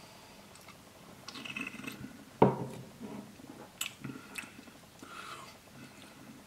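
A person sipping and swallowing beer, followed by soft wet mouth sounds as he tastes it. One sharper knock comes about two and a half seconds in.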